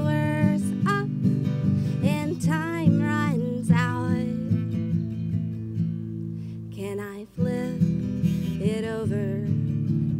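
Acoustic guitar strummed, with a woman singing over it in long, gliding held notes. The music drops away for a moment a little past seven seconds in, then carries on.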